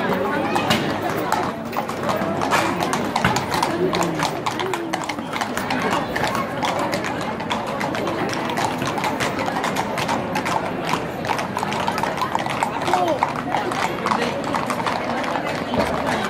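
Horses' hooves clip-clopping on stone paving as several ridden horses walk past at a walk, with many uneven hoof strikes throughout.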